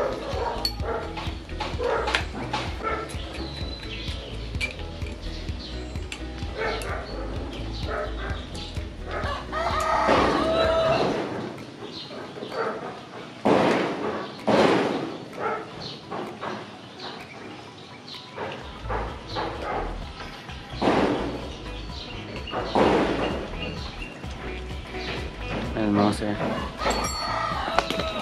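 Small metallic clicks and taps of a 12 mm wrench working a motorcycle's clutch-cable adjuster nut, under background music, with several louder bursts of sound a few seconds apart.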